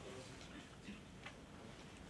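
Near silence: room tone through a lectern microphone, with two faint clicks about a second in.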